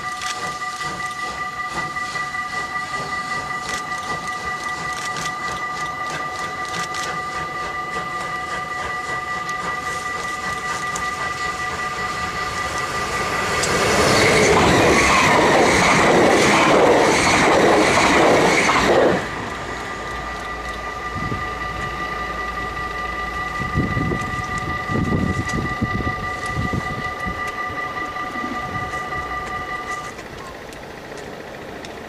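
A steam train passes close by for about five seconds, loud, with a rhythmic beat in its noise. Under it, a steady high tone sounds on throughout.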